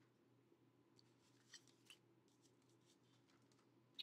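Near silence: faint handling of paper and craft tools on a table, with two small clicks about one and a half and two seconds in.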